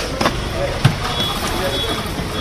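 Fish-market ambience: a steady background din with indistinct voices, a couple of sharp knocks and a faint high beep near the middle.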